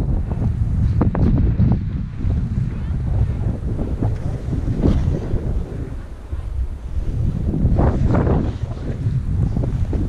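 Wind buffeting an action camera's microphone as a skier descends, a steady low rumble, with the skis scraping over bumpy, chopped-up snow in a few louder surges, about a second in, near the middle and around eight seconds.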